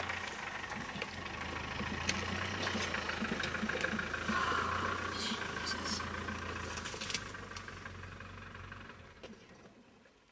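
Safari vehicle's engine idling, a steady low hum that fades away near the end.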